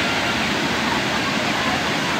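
A waterfall pouring over a rock ledge into a shallow pool, a steady rush of water, with faint voices of people in the background.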